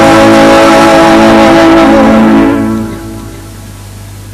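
Live band music ending on a held final chord that dies away about two and a half seconds in, leaving a low steady hum.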